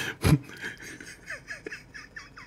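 A man's stifled laughter: a run of short, high squeaks a few times a second, held back behind his hand.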